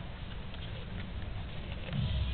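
Golden retriever chewing and biting into a slice of watermelon, with a few sharp wet crunches, one at the start, one about a second in and one near the end.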